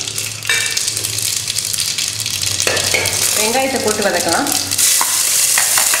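Hot oil sizzling in a stainless steel pot as the seasoning fries. The sizzle grows louder about five seconds in, as chopped onions are tipped into the pot.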